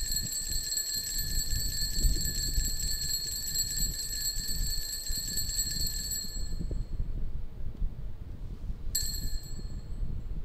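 Altar bells shaken in a rapid, continuous high ringing for about six and a half seconds, then cut off, with one short second ring near the end. This is the bell rung at the elevation of the consecrated host during Mass.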